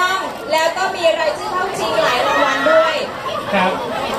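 Several people talking at once, with voices overlapping in a chatter.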